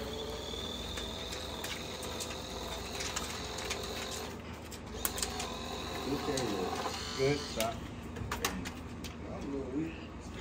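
Battery-powered money gun whirring as it fires a stream of paper bills, with a steady high whine for the first four seconds or so, then scattered clicks and flutters as the bills fly.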